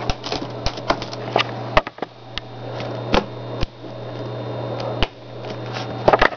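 Scattered light clicks and taps from handling an old iBook G3 laptop and its flip-up keyboard and internal parts, over a steady low hum.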